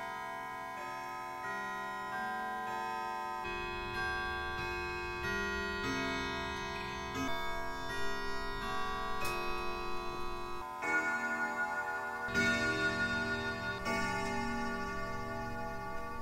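Grandfather clock chiming a slow tune on its bells, one note about every second, each ringing on under the next.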